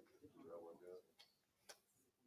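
Near silence with a faint, brief voice in the room, followed by two sharp clicks about half a second apart near the end.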